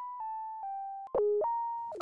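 Simple synthesizer melody of plain electronic tones: three notes stepping down, then a louder low note about a second in, then a higher held note near the end.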